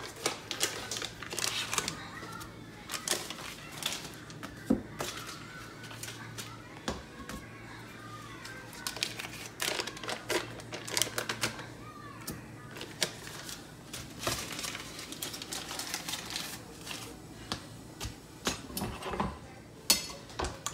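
Irregular clicks, taps and paper rustling as sticks of butter are unwrapped from their wrappers and dropped into a saucepan.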